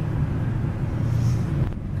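Engine and road noise heard inside a car's cabin while driving, a steady low drone.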